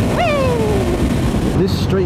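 A rider's voice giving one drawn-out cry that falls in pitch, over the steady rush of wind and motorcycle engine noise at motorway speed.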